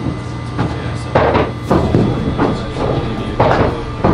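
Skee-ball balls rolling up the lanes with a steady low rumble, broken by several sharp knocks and clunks as balls hit the ramp and drop through the scoring rings.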